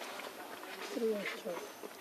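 A short, low animal call that falls in pitch about a second in, followed by a second shorter call, over a steady outdoor hiss.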